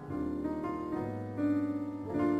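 Piano music, with a new chord or note struck about every half second and each one ringing on under the next.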